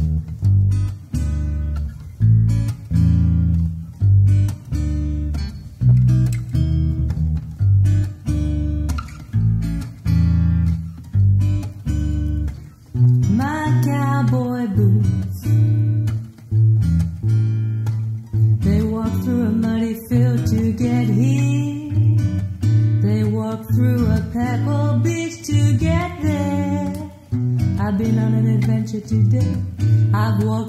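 Opening of an acoustic band song: acoustic guitar and bass guitar playing a steady rhythm, with a lead voice starting to sing about thirteen seconds in.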